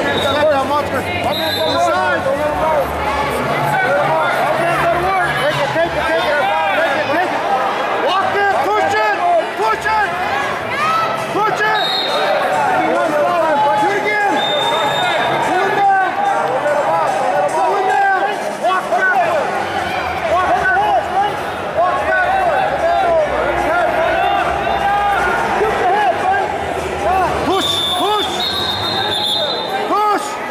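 Many voices shouting and calling at once, echoing in a large hall: spectators and coaches yelling during youth wrestling bouts, no single voice clear.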